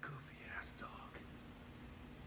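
Faint, hushed speech in the first second or so, then a low steady hum.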